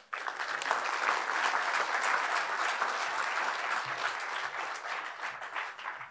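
Audience applauding. It starts all at once, is dense at first, and thins out and fades toward the end.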